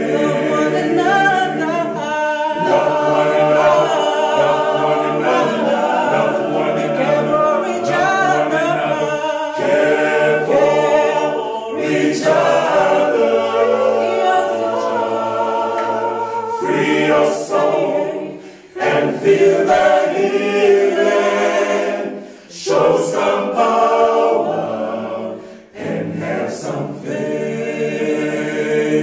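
Male vocal group singing a cappella in harmony, a lead voice over the others' sustained backing. The singing breaks off briefly three times in the last third.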